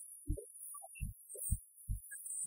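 Live band playing a sparse, stripped-down passage: deep bass thumps about twice a second with a few faint higher notes between them.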